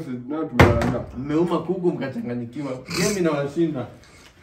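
A plastic bottle, partly filled with liquid, flipped into the air lands on a table with one sharp knock about half a second in, amid voices.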